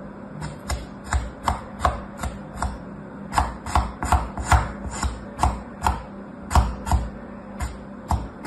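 Packed kinetic sand being cut with a small plastic tool, many short crisp crunching cuts at an uneven pace of about two to three a second as the block is sliced into pieces against the table.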